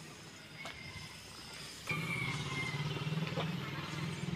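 A small motorcycle engine running close by, coming in suddenly about two seconds in as a steady, pulsing drone with a faint high whine; before that, only low street background.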